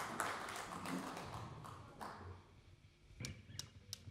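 Audience applause dying away, then near quiet broken by a few light taps.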